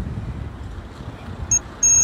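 Wind rumbling on a phone microphone, with no speech. A steady high-pitched tone starts about one and a half seconds in and holds.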